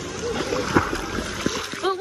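Water splashing and lapping around an inflatable ring float on a lazy river, with a louder splash a little under a second in. Voices talk underneath.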